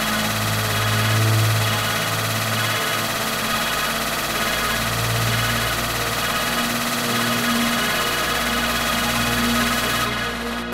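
A dense, droning, noisy synth passage of a techno track played from a vinyl record, with no clear beat. Deep bass tones swell up and fade away a few times.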